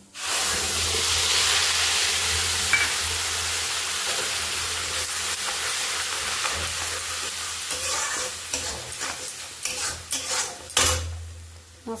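Ground spices (turmeric, chilli, cumin and coriander powder) hitting hot oil in a metal kadai: a sudden loud sizzle that slowly dies down while the masala is stirred with a metal spatula. Spatula scrapes grow distinct near the end before the frying fades.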